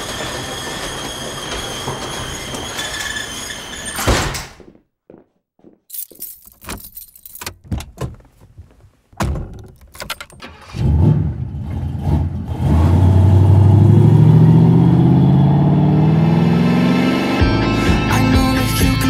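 Intro of an electronic house track: a dense, noisy opening section cuts off abruptly about four seconds in, followed by a stretch of scattered clicks and short silences, then a low tone that rises steadily in pitch for about five seconds, building into the song.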